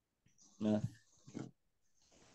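Speech only: a man's short, low "yeah" about half a second in, then a brief faint vocal sound; otherwise quiet.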